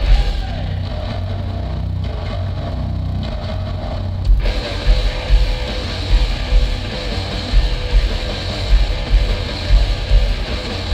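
Sludge metal band playing live, heavy and low. For the first four seconds a low guitar chord rings on without drums. About four and a half seconds in, the drums and cymbals crash back in with a slow pounding beat of about two hits a second.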